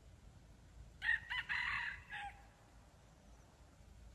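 Red junglefowl rooster crowing once: a short crow starting about a second in and lasting just over a second, ending in a brief clipped final note.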